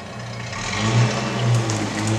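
Jeep Cherokee SUV's engine pulling away at low speed, a steady low hum that grows louder and swells as it accelerates, about a second in.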